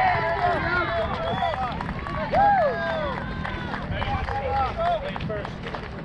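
Several voices shouting and cheering over one another, high, rising-and-falling calls, loudest about two and a half seconds in, as a run scores in a softball game.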